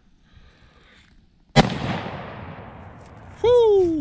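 A single shot from a .308 Magnum Research Lone Eagle single-shot pistol about a second and a half in, its report echoing and dying away over nearly two seconds. Near the end a person's voice calls out, falling in pitch.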